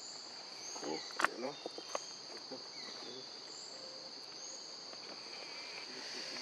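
A steady, high-pitched chorus of insects drones throughout. Between one and two seconds in come a few short clicks and rustles, the sharpest about a second in.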